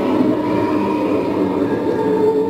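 A loud, steady droning background with sustained low tones over a constant rumbling hiss, the tones holding and shifting pitch slightly.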